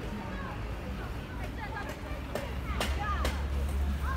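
Background chatter of several people talking, with no clear words, over a low steady rumble that grows stronger after about two and a half seconds. A few sharp clicks are scattered through it.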